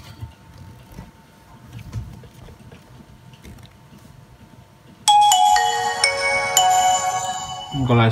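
A Nokia XpressMusic 5130 phone playing its start-up tune through its loudspeaker: after a few seconds of faint handling, a loud run of bright chiming notes starts about five seconds in and lasts nearly three seconds as the phone boots.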